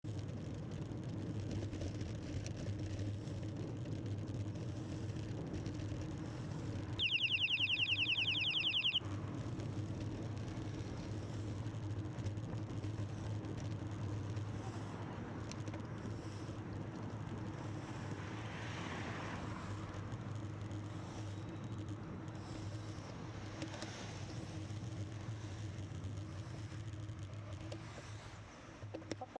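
Steady wind and road noise of a road bike ridden at speed, with a low hum underneath and passing car noise. About seven seconds in, a loud, rapid, high-pitched trill sounds for about two seconds.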